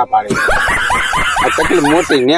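High-pitched snickering laughter: a quick run of short rising 'hee' notes, about six or seven a second, starting a moment in and lasting nearly two seconds.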